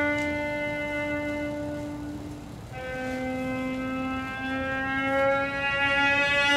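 Solo cello bowing long, sustained drone notes. One held note fades away about two and a half seconds in, then a slightly lower note enters and slowly bends upward in pitch.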